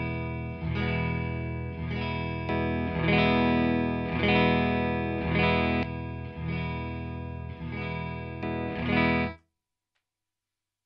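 Electric guitar strumming a full E chord with the low E over and over through two guitar amps, each strum ringing out, until it stops about nine seconds in. One amp's phase has been reversed to demonstrate out-of-phase cancellation, which shows most in the bottom end.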